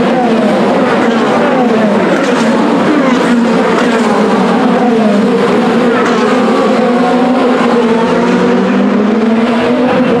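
A pack of IndyCar race cars with 2.2-litre twin-turbocharged V6 engines passing close by at speed on a restart. Many engine notes overlap, each sliding up and down in pitch as the cars go by and change gear.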